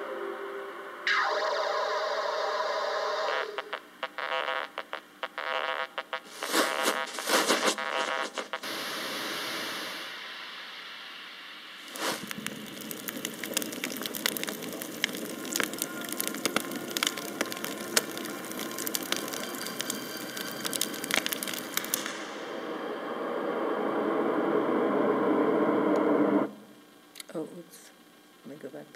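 Soundtrack of a projected animation playing over room speakers: a shifting mix of musical tones and sound effects, with a long, dense stretch of crackle in the middle. It cuts off suddenly near the end.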